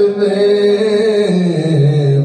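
A man's voice chanting Sufi zikr in long held notes, stepping down in pitch a little past halfway.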